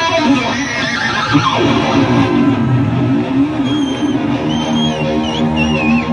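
Live rock band playing loud, with electric guitars over drums. A held guitar note wavers in pitch through the middle, and high wavering squeals come over it in the second half.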